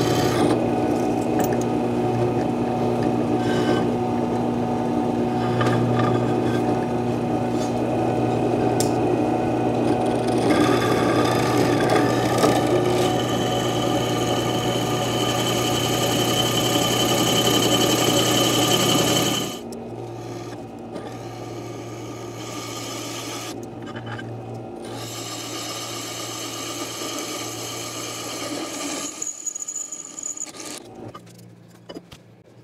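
A drill press running, its twist bit boring through 3/8-inch steel plate: a steady motor hum under the scraping of the cut. About two-thirds of the way through, the sound drops to a quieter steady hum.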